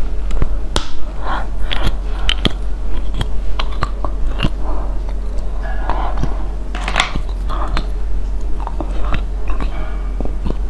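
Close-up crunchy bites and chewing of a hard white snack stick, a run of sharp, irregular cracks.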